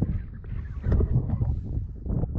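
Wind buffeting the microphone: an uneven low rumble that swells about a second in.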